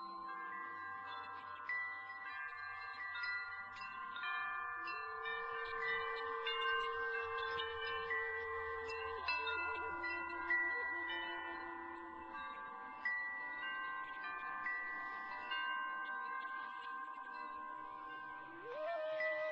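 Metal wind chimes ringing continuously in many overlapping bright tones. A Native American flute plays long, low held notes under them, one from about five to nine seconds in and a lower one just after.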